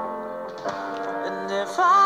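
Background music: a slow song with held chords, and a voice beginning to sing near the end.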